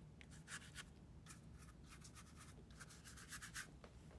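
Faint, irregular swishes of a large watercolour brush stroked across paper while laying in a wash, stopping shortly before the end.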